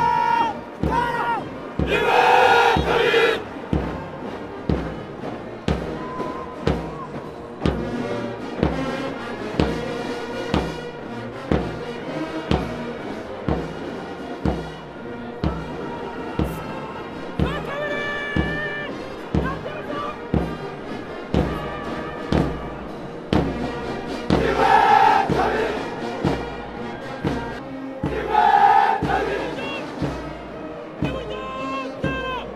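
Massed soldiers' voices chanting in unison over a heavy, steady marching beat of about one and a half beats a second, with louder shouted calls about two seconds in, midway, and twice near the end.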